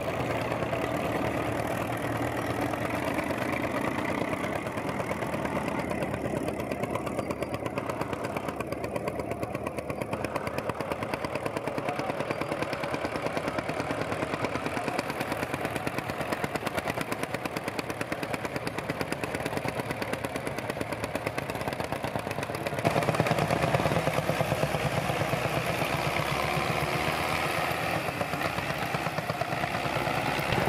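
Old farm tractor engines running under load in a steady, rapid chug, stepping up suddenly louder about two-thirds of the way through.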